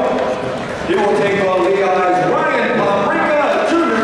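A man's voice, sounding continuously with a brief dip just under a second in; its words cannot be made out.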